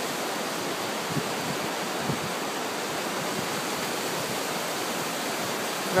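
Steady rush of flowing river water: an even, unbroken hiss.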